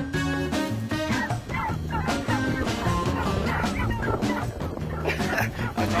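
A dog barking, over background music.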